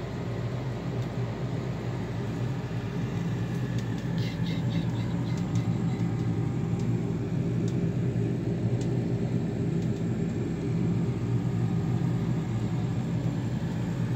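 A steady low mechanical hum with a rumble, unchanging throughout, with a few faint clicks a few seconds in.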